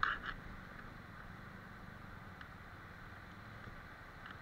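Shallow mountain stream rushing over rocks, a steady rush of water, with two short, sharper sounds right at the start.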